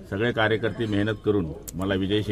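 A man speaking in Marathi with a low voice.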